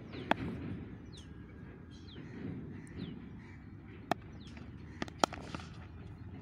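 Cricket bat striking the ball once, sharply, about a third of a second in, with a few more sharp clicks around four and five seconds in. Short descending bird whistles repeat through it, over steady outdoor background noise.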